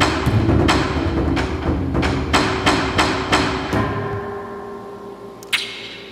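Electronic percussion triggered by arm gestures through wrist-worn Intel Curie motion sensors: heavy drum hits, about three a second over a low boom. A little under four seconds in, a last hit leaves a pitched tone that rings and fades, and a sharp click comes near the end.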